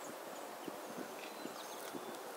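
Faint outdoor ambience with a few scattered soft knocks and, about three-quarters of a second in, brief faint high chirps of small birds.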